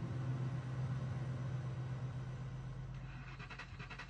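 Hongqi V12 engine idling: a steady low hum that fades slightly, running smoothly enough at idle that a coin stands upright on it.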